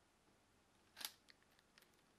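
A single sharp click from the LEGO crossbow pistol about a second in, followed by a few faint ticks, otherwise near silence.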